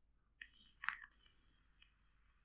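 A man taking a draw on a pen-style vape, faint throughout: a couple of small mouth or mouthpiece clicks, then a steady high hiss of the draw for about a second and a half.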